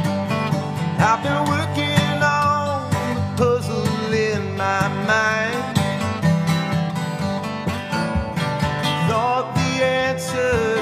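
Live acoustic folk-country band music: strummed acoustic guitar with a wavering, gliding melody line over it.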